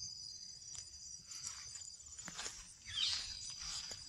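Steady, high-pitched chorus of crickets chirping, with a soft rustle about three seconds in.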